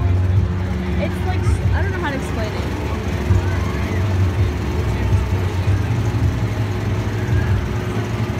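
Steady low rumble of a running engine with a constant hum, under faint voices of people nearby.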